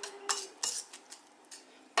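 Wire whisk stirring thick banana batter in a stainless steel bowl, its wires clinking against the metal bowl a few times.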